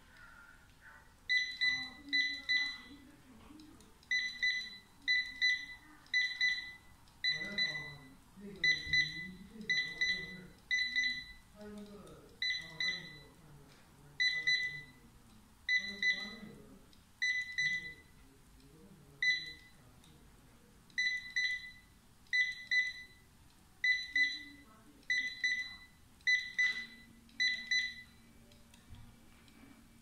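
Handheld wireless barcode scanner giving its good-read beep again and again, mostly quick double beeps, about once a second. Each beep signals that it has decoded another hard-to-read barcode (colored background, scribbled over or damaged) on a test card.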